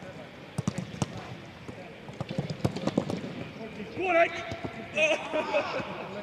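Footballs being struck during a team training session: sharp kicks a little under a second in, and a run of them around two to three seconds in. Players' shouted calls come about four and five seconds in.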